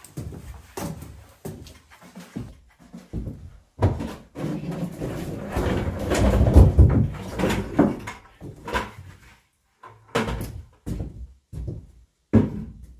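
Footsteps and knocks on a plank floor, then stones clattering and tumbling out of a plastic bucket onto a stone pile for about four seconds, followed by more footsteps.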